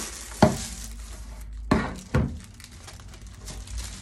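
Crinkly rustle of baking paper and freshly iron-fused plastic crisp packets being pressed and handled on a table, with three sharp taps: one about half a second in and two close together near the middle.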